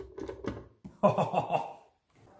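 TIG welder foot pedal pressed and worked by hand, giving a quick run of plastic clicks and rattles, followed about a second in by a man laughing.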